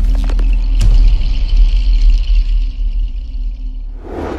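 Cinematic logo-intro sting: a deep, sustained bass rumble under a high shimmering ring, with a few sharp hits shortly after the start, all slowly fading away.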